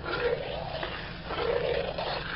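White wine boiling and sizzling as it reduces in a hot wok, with a spatula stirring through it; the noise swells about halfway through.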